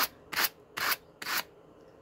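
Two wire-toothed hand cards drawn across each other, carding Malamute dog fur to pull out tangles: four brisk brushing strokes, about two a second, stopping about a second and a half in.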